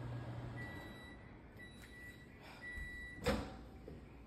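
Over-the-range microwave oven: its running hum cuts off about half a second in, it sounds a series of high beeps (one longer, then three short), and its door is released with a loud clunk about three seconds in.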